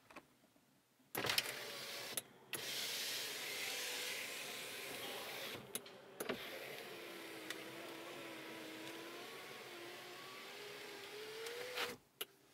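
Electric window motor of a Lada Vesta driving the door glass, held on the switch since the windows have no one-touch function. It runs in stretches with short pauses and clicks between them, its whine rising in pitch near the end before it cuts off.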